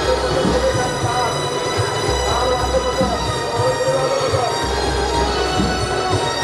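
Loud procession music: a wavering melody over heavy drumming and a dense, steady metallic ringing.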